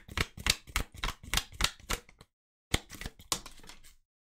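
A deck of oracle cards shuffled by hand: a run of crisp clicks about four a second, a short pause a little over two seconds in, then a few more clicks and a softer rustle of cards.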